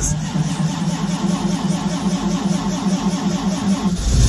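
High-torque starter cranking the 1965 Land Rover Series IIA's fuel-injected 2.25-litre petrol four-cylinder, a steady cranking with a regular pulse, heard from inside the cab. This is a cold start at about two degrees, and the engine fires right at the end.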